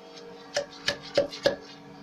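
A charging stick tamping explosive cartridges into a drill hole in a rock face, four quick knocks about a third of a second apart, over a steady hum.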